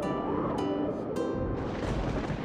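Soundtrack music with plucked string notes ringing over sustained tones, a couple of new notes struck in the first half.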